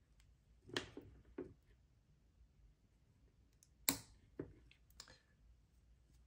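A handful of short, sharp clicks, the loudest about four seconds in, from hands working wires into orange-lever wire connectors to join two trailer brake magnets in series for a meter reading.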